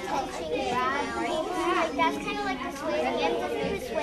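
Classroom chatter: many children's voices talking over one another, with no single voice standing out.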